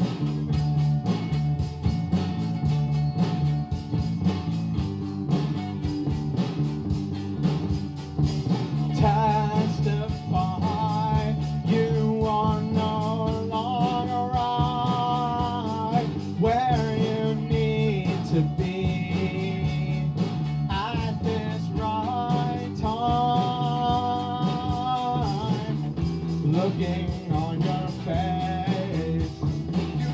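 Live lo-fi indie rock: an electric guitar played over a prerecorded backing track with a dense, steady low end. A higher wavering melody line comes in about nine seconds in and carries on and off to the end.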